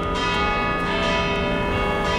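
Church tower bells ringing, several bells sounding together in long overlapping tones, with a fresh stroke about a second in.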